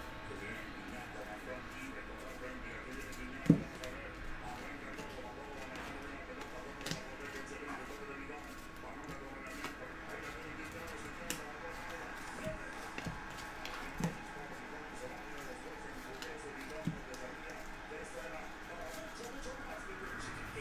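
A hand-held stack of 2017 Panini Prestige football cards being flipped through one card at a time: faint sliding of card stock with a few light clicks, the sharpest about three and a half seconds in.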